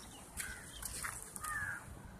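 Two short bird calls, one about half a second in and a louder one near the end.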